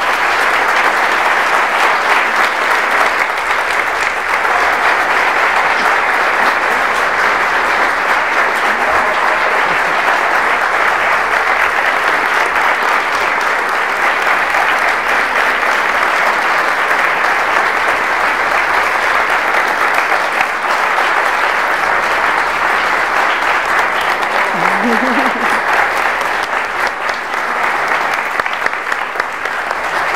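Audience applauding, a dense, steady round of clapping that holds without letting up for the whole half minute.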